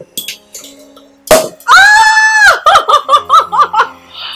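A champagne cork pops loudly about a second in, followed by a woman's high, held squeal and then her laughter.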